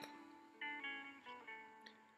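Faint background music of plucked guitar notes, played one at a time in a slow run.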